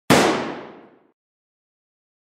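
A single sudden loud bang that dies away over about a second, an edited-in impact sound effect over the cut from the title card.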